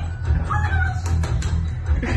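Music with a heavy, steady bass beat and high gliding melody lines, played through a Tesla Model X's own speakers as the soundtrack of its built-in light show.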